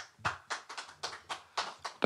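Sparse applause after a song: a few hands clapping, separate claps at about five a second.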